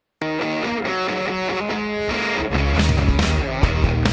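Background music that starts suddenly a fraction of a second in after dead silence, then gets louder and fuller, with a steady beat, about halfway through.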